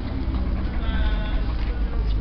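A three-month-old puppy gives a thin, high whine lasting about a second, starting near the middle, over a low rumble.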